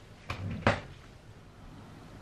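Two short knocks about half a second apart, the second louder and sharper: a white enamel dish holding cut pork being set down on a hard kitchen counter.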